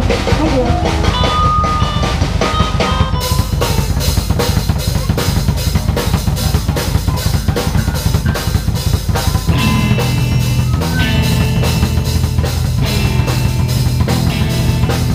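Live rock band playing: drum kit with bass drum, snare and a steady cymbal beat that comes in about three seconds in, over electric guitars and a bass guitar that grows stronger near the end.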